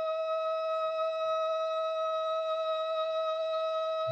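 Solo amplified trumpet whose player sings into it through the instrument's pickup, producing one long, perfectly steady note with a pure, buzz-free tone. It is heard as a recording played back over a video call.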